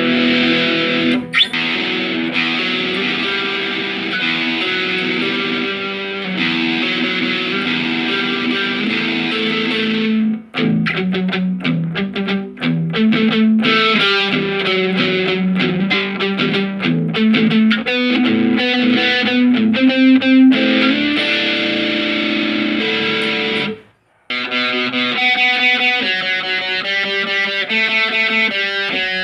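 Electric guitar played through a Positive Grid Spark Go portable amp on its fourth preset, with a distorted tone: held chords and riff lines, a short break about ten seconds in and a brief stop near the end, then fast picked single notes.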